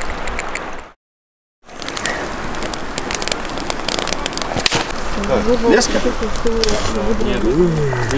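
Wood campfire burning with many small sharp crackles over a steady hiss, after a brief dropout to silence about a second in. Voices talk over it in the second half.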